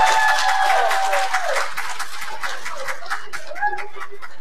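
Congregation applauding, with one voice holding a long high cheer over the first second and a half; the clapping then thins out to scattered claps.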